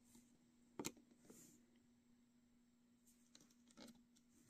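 Near silence with a faint steady hum. A metal crochet hook clicks once against the plastic loom pins and rubber bands a little under a second in, with a few fainter ticks near the end.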